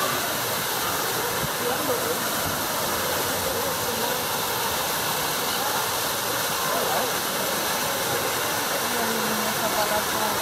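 A steady rush of falling water, with the murmur of people's voices underneath it.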